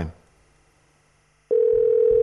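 Near silence after a man's voice trails off, then a steady sustained tone starts suddenly about one and a half seconds in: the opening note of a TV channel's break bumper music.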